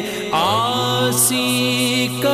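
A singer's voice in a Punjabi devotional song, gliding up into a long held note over a steady low drone.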